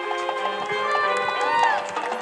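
High school marching band and front ensemble playing their field show: layered sustained notes over struck mallet-percussion notes, with one tone that swoops up and back down near the end.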